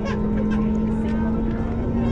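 Cabin noise of an Airbus A320neo with CFM LEAP-1A engines at takeoff power during the takeoff roll: a steady rumble with a droning hum. Voices are heard over it.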